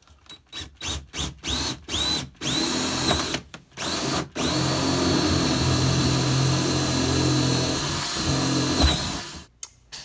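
Yellow DeWalt cordless drill boring a hole through the stove platform. It starts with several short trigger pulses, the motor whine climbing each time, then runs steadily at full speed for about four and a half seconds before stopping about a second before the end.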